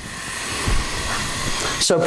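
A whooshing transition sound effect: a noise that swells steadily louder over about two seconds, with a brief low rumble partway through.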